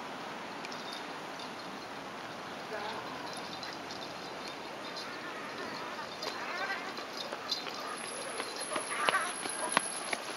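Footsteps and a dog's paws on paving as a person walks and then hurries with a German shepherd on a leash, the steps growing louder and quicker in the second half. A person's voice speaks briefly a few times.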